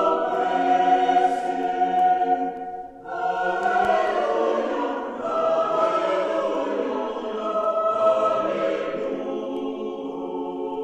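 Choir singing a slow passage of held notes in a resonant cathedral, with a short break about three seconds in before the voices come back in.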